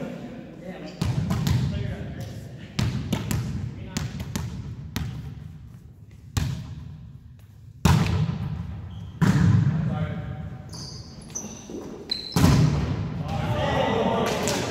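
Volleyball being hit and bouncing on a hardwood gym floor: about half a dozen sharp thumps spread through the rally, each ringing out in the echo of a large hall, among players' voices.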